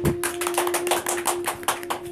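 A small group clapping, a quick uneven patter of hand claps, over a steady low tone.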